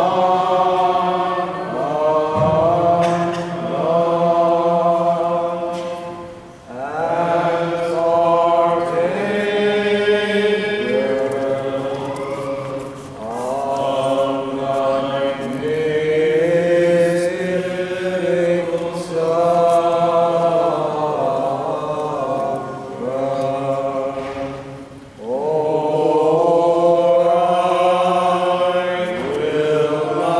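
Liturgical chant: voices singing long, sustained melodic phrases, with brief breaks between phrases about six seconds in and again near twenty-five seconds.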